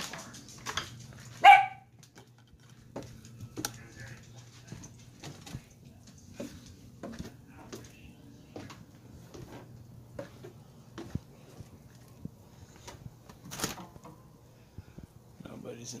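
A dog barks once, loudly, about a second and a half in, followed by steady footsteps and a low hum that runs throughout.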